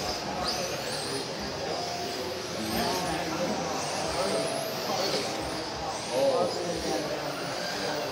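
1/10-scale electric touring cars racing: the high whine of their brushless motors rises and falls as they accelerate and pass, with voices talking faintly underneath.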